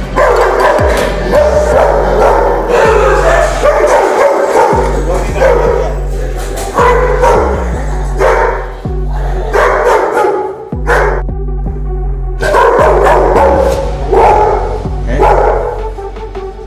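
Dogo Argentino barking repeatedly at an unfamiliar visitor, over loud electronic music with a heavy bass beat.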